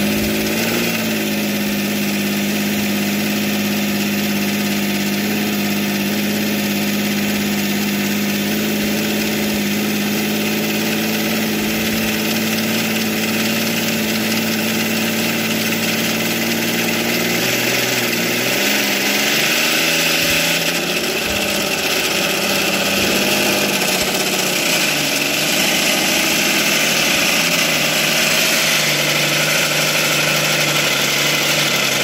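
PhilTech V12, a 108 cc liquid-cooled two-stroke glow-plug model aircraft engine, running at idle just after firing up, turning a four-blade propeller. About eighteen seconds in, its note shifts and wavers for a few seconds and then settles a little louder.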